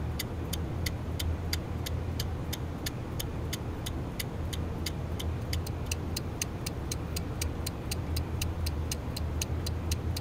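Even, regular ticking, about three to four ticks a second, like a clock, over a steady low hum.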